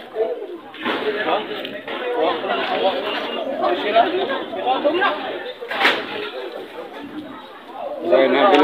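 Several people talking at once in indistinct chatter, with one sharp click a little before six seconds in.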